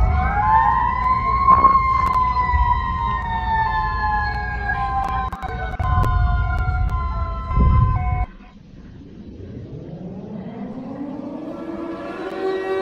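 Emergency alert siren played back on a computer: a wailing tone rises for about a second and a half, then slowly falls, over steady tones and a low rumble. About eight seconds in it cuts off abruptly as playback skips ahead, and a second alarm siren slowly winds up.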